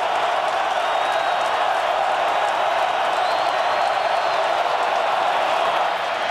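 Steady, even noise of a large football stadium crowd on a third-down play, with no single voice standing out.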